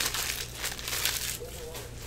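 Foil trading-card pack wrapper crinkling as it is handled and torn open, loudest in the first second, then dying down to a quieter rustle.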